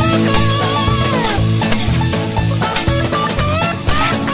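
Background music with a melody, over a spatula stirring and scraping chopped cuttlefish as it sizzles in a wok.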